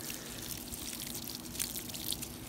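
Cooling water pouring steadily from a clear plastic hose and splashing onto leaf-strewn ground.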